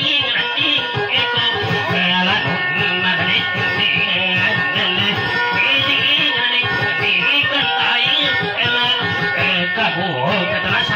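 Acoustic guitar played steadily with a man singing over it, a dayunday song.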